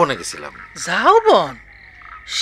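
A person's voice: one short sound that rises and falls in pitch about a second in, over a faint steady background sound.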